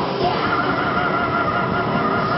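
Thrash metal band playing live, with distorted guitars and drums. From about half a second in, a high held note with a fast, even vibrato rises above them.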